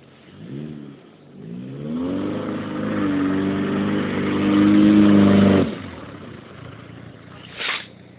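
Chevrolet Chevette's four-cylinder engine revving: a quick blip, then a rise to high revs held for about three seconds, which cut off suddenly, falling back toward idle.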